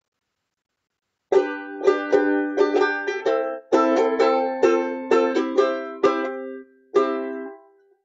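Banjo ukulele strummed in chords, beginning about a second in: a steady run of strums, with a last chord near the end left to ring out, the instrumental opening of a song.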